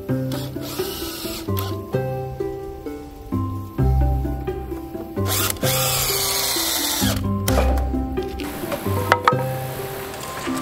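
DeWalt cordless drill running in two bursts, a short one about a second in and a longer, louder one in the middle, as it drives into the wooden frame, with a whine that rises and falls in pitch. Background music with a steady bass line plays throughout.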